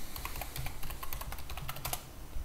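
Typing on a computer keyboard: a quick run of key clicks that stops near the end.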